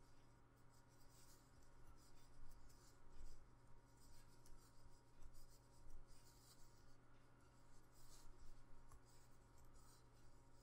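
Faint, repeated scratchy rustle of yarn pulled over a metal crochet hook as double crochet stitches are worked, coming and going every second or so over a low steady hum.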